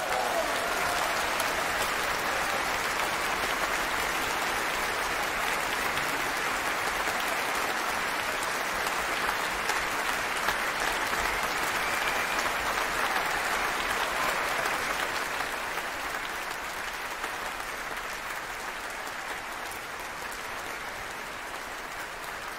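A large concert-hall audience applauding steadily, the applause easing somewhat after about fifteen seconds.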